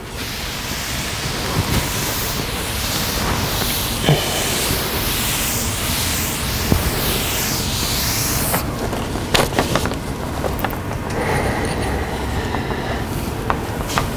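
Damp cloth wiped across a chalkboard in long rubbing strokes, a steady rushing swish. About two thirds of the way through the wiping stops and gives way to a few sharp taps and scratches of chalk on the board.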